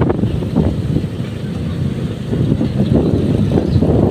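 Wind rumbling on the microphone while moving along a street, mixed with the low running of a vehicle.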